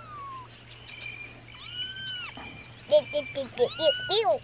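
Young kittens mewing: one thin, drawn-out mew about halfway through, then a quick run of short mews near the end.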